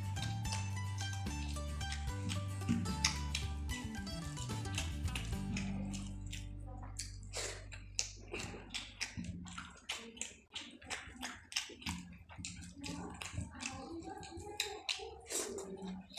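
Background music fades out over the first half. Then close-miked eating by hand takes over: a quick run of wet clicks and smacks from chewing a mouthful of fried rice and chilli paneer, along with fingers working the rice on the plate.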